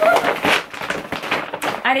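Voices and laughter, with the crinkling rustle of a shiny plastic bag being opened and reached into.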